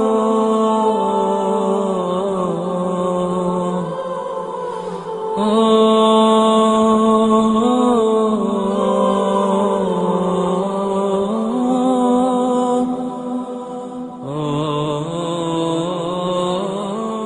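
Background music of a chanted vocal mantra on long held notes that slide slowly in pitch, with a new phrase starting about five seconds in and another near the end.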